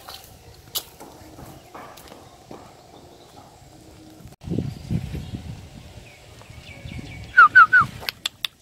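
A dog whining three times in quick succession near the end, each whine short and falling in pitch. These follow low scuffing noises from about halfway through.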